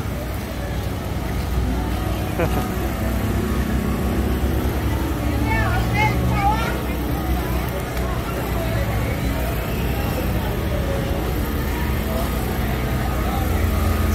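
Outdoor background noise: a steady low rumble with faint voices of people around, and a voice speaking briefly about six seconds in.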